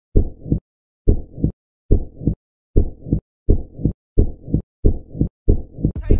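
Heartbeat sound effect: about eight low double thumps (lub-dub) with silence between them, getting faster as it goes.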